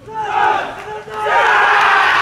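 Baseball players shouting together in unison at the pre-game greeting. A first loud group shout is followed, from just after a second in, by a louder, sustained mass of shouting and cheering.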